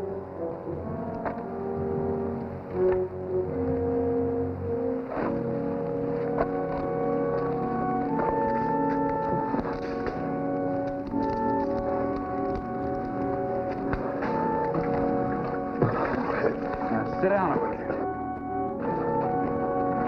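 Dramatic orchestral score with long held brass and organ-like chords that shift every second or so. Short sharp impacts from a fistfight sound now and then under the music.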